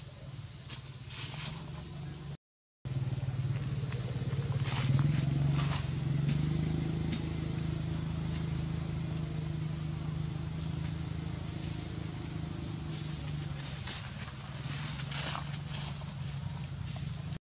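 Steady high-pitched drone of an insect chorus, under a low hum that swells about five seconds in and slowly fades, with a few faint ticks and rustles. The sound cuts out completely for a moment near the start.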